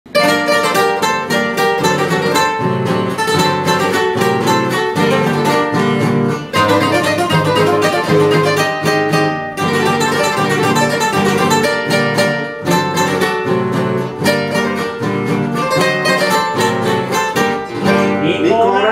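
Three acoustic guitars playing together, an instrumental introduction with a melody over rhythmically strummed chords and no singing yet.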